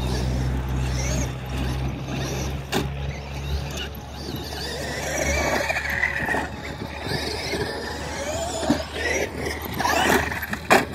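Traxxas X-Maxx electric RC monster trucks running on a dirt track, their brushless motors whining up and down in pitch as they speed up and slow down. A few sharp knocks come from the trucks hitting the dirt, around three seconds in and again near the end.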